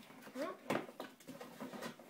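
A cardboard box being handled and its top flap pried open by hand: a few faint knocks and scrapes of cardboard.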